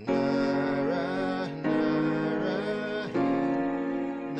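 Keyboard piano playing sustained chords in F-sharp major: three chords, each struck about a second and a half after the last and held. A voice sings softly along with them.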